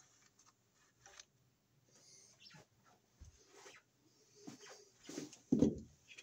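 Mostly quiet, with faint scattered light clicks and rustles of hands handling things, and a dull thump about three seconds in. Near the end come a few louder handling sounds and a brief voice-like sound.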